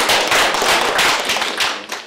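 Applause from a small group of people in a room, many individual claps, sharp and close; it thins out near the end.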